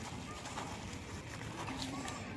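Rain falling on the river surface around a person wading, with small splashes and ticks of drops, while a bird calls a few times.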